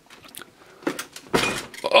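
Light clicks and rattles from handling a plastic-and-metal RC truck body. About a second and a half in comes a single loud cough.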